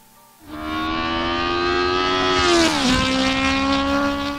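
Racing car engine sound effect used as a segment transition. A high engine note starts about half a second in and swells, then drops sharply in pitch about three seconds in as the car passes by, and carries on at the lower pitch.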